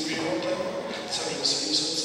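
A man's voice talking continuously, as in a sermon.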